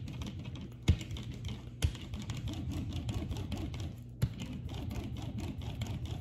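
A hand brayer is rolled back and forth over a sheet of paper on an inked printing plate, pressing the paper down to pull a print. It makes a steady low rolling rumble, with sharp clicks about one, two and four seconds in.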